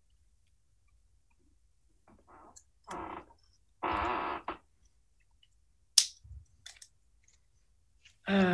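Mostly quiet, with three short, faint bursts of a person's voice between about two and four and a half seconds in, and a single sharp click about six seconds in.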